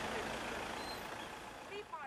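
Street ambience: steady, low traffic noise from cars in a city street, with a brief faint voice near the end.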